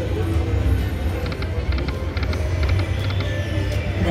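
Dragon Link Golden Gong slot machine playing its music and spin sounds over a steady low casino-floor rumble, with a quick run of short clicking ticks in the middle as the reels spin and stop.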